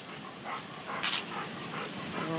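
A Labrador retriever breathing hard close to the microphone: a few irregular breathy puffs.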